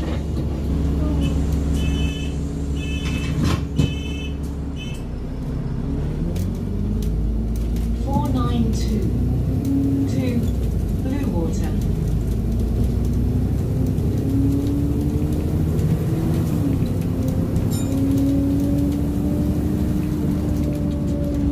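Alexander Dennis Enviro400 diesel double-decker heard from inside the lower deck, its engine and gearbox running as the bus drives on. The note dips about five seconds in, then a whine climbs steadily in pitch through the second half as the bus gathers speed.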